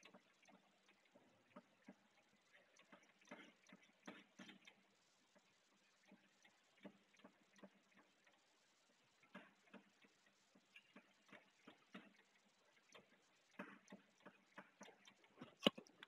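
Near silence with faint, irregular taps and short scratches of chalk drawing on a chalkboard.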